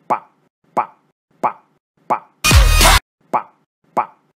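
An animated dachshund character's voice saying "Hi" over and over, one short syllable about every two-thirds of a second. A half-second burst of electronic pop music cuts in a little past halfway.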